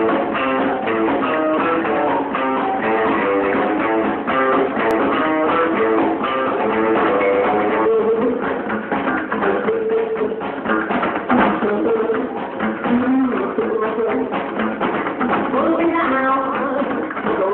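Live rockabilly band playing, guitar to the fore over a drum kit and upright double bass. The recording is muffled, with no treble, as from a phone in the audience.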